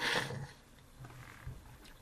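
A man's noisy breath out close to the microphone, like a sigh, fading by about half a second in; a faint low murmur of voice follows about a second in.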